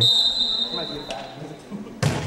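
Volleyball referee's whistle blown once, a steady high tone lasting about a second, signalling the server to serve.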